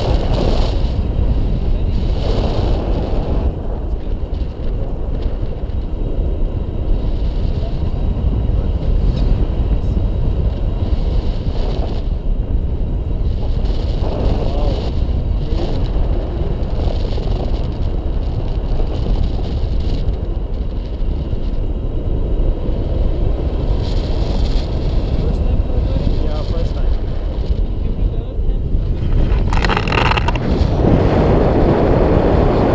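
Wind buffeting the microphone of a pole-mounted camera on a tandem paraglider in flight, a steady, low-heavy rumble of rushing air.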